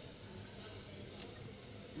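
Quiet room tone in a pause between speakers: a faint, steady hiss with a low hum underneath, and no distinct events.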